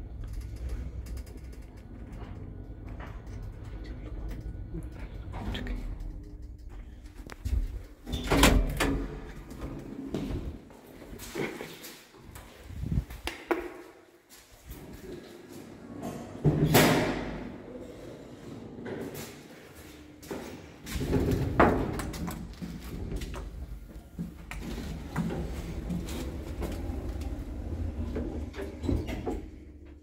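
Passenger lift: a steady low running hum while the car travels, then loud clunks and rumbles from the automatic sliding doors, heard three times, and the car running again near the end.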